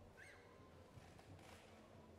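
Near silence: faint background hum of a large outdoor gathering, with one brief, faint high-pitched chirp about a quarter second in.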